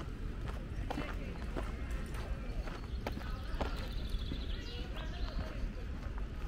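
Footsteps on a gravel path at a steady walking pace, about two steps a second, over a steady low rumble.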